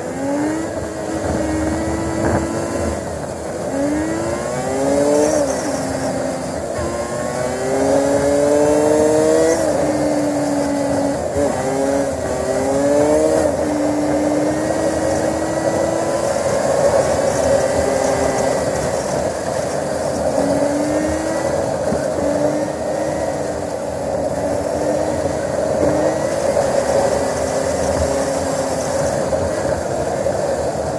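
Road vehicle engine under way, its pitch climbing as it accelerates and dropping back at gear changes several times, then running more evenly. Steady wind and road rush on the onboard microphone.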